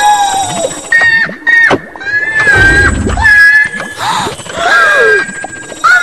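A cartoon character's high-pitched cries and squeals: several drawn-out notes, some held and some sliding down in pitch, over background music.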